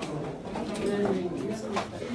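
Indistinct voices of several people talking at once in a crowded small room, with a couple of short clicks or knocks.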